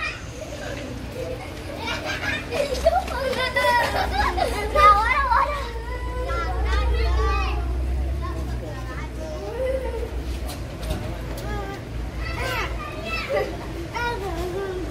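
Street voices: children calling out and people talking among the crowd, with a low steady rumble in the middle of the stretch.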